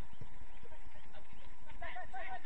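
Distant voices of players calling out across an outdoor football pitch, over a steady low background rumble, with a few short soft knocks.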